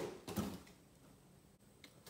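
A short handling noise fading out within the first half-second, then near silence with a single faint click near the end.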